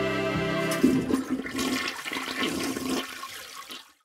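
The last note of an intro theme tune, then about a second in a toilet flushes: a sudden rush of water that runs about three seconds and fades away.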